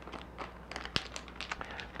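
A foil pack of sterile electrodes being opened by hand at the top: a scatter of faint, quick crinkles and clicks, one slightly sharper about a second in.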